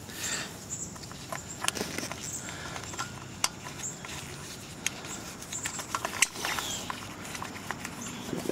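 Light clicks, taps and scratching of small metal parts handled by gloved hands: a carburetor float bowl, gasket and bowl nut being fitted. The sharp clicks are scattered and irregular.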